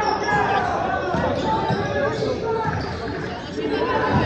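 Basketball being dribbled on a hardwood gym floor during play, repeated thuds mixed with voices and shouts from players and spectators, echoing in a large gym.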